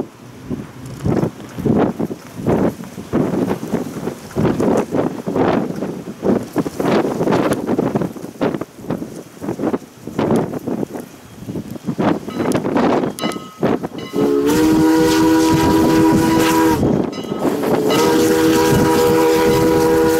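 Canadian National 89, a 1910 2-6-0 Mogul steam locomotive, pulling a train with a steady beat of exhaust chuffs, about two or three a second. About fourteen seconds in, its Pennsylvania Railroad three-chime steam whistle sounds two long blasts with a short break between them.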